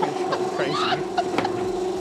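Steady hum of a bagel-shaping machine running, with a few sharp clicks and knocks over it and a brief voice sound in the middle.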